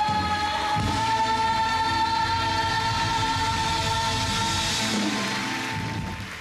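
Live band's closing chord: one high note held steady over sustained accompaniment, fading out near the end.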